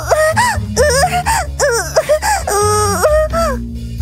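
Wordless cartoon character voices whining and wailing in short up-and-down swoops, over background music.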